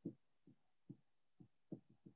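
Near silence, broken by faint, very short low-pitched thumps, about two a second at uneven spacing.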